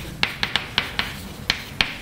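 Chalk clicking and tapping against a blackboard while writing: about seven short, sharp taps in two seconds, irregularly spaced as letters and strokes are begun.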